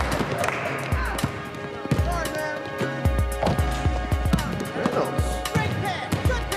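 Hip-hop song with a heavy beat of low thumps about twice a second and a voice over it.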